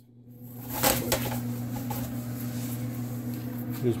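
Electric kick heater's fan motor starting up as the rotary switch is turned to position one. Its hum builds over the first second, with a couple of clicks about a second in, then runs on steadily.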